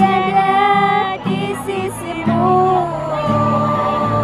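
Two women singing a slow Indonesian song together, with long held notes, to a strummed acoustic guitar.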